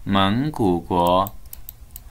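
A man's voice holding a drawn-out sound for about a second, then scattered light clicks at the computer, a few a second.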